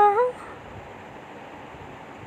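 A high solo singing voice, unaccompanied, ends its held note on "now" with a short upward glide just after the start. A faint steady hiss follows.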